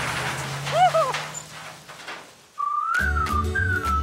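Cartoon rain hiss with a brief vocal whimper from a character, fading away; about two and a half seconds in, a whistled tune with gliding notes begins over music with a deep bass, the show's logo jingle.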